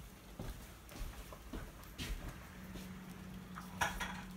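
Faint kitchen room tone with a few soft clicks and knocks, and a low steady hum that comes in about halfway through.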